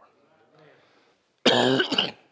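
A man coughs loudly into his hand, about a second and a half in, after a moment of quiet.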